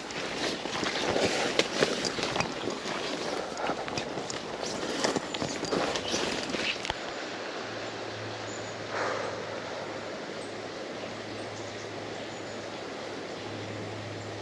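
Footsteps and the rustle and swish of leaves and stems as someone pushes through dense, waist-high riverbank undergrowth, with irregular crackles. About halfway through the sound changes abruptly to a quieter, steady outdoor background with a faint low hum.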